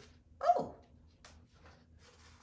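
A woman's short exclamation, like a falling "ooh", about half a second in, followed by faint rustles and clicks of a cardboard box lid being handled.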